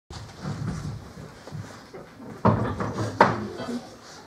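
Two sudden knocks or bangs less than a second apart, the second sharper with a short ring after it, over a low murmur of voices in the room.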